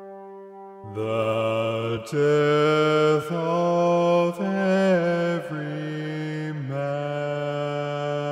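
A faint held low note, then about a second in low male voices enter, singing long sustained notes in a slow, chant-like line that steps to a new pitch roughly every second, as part of an orchestral symphony.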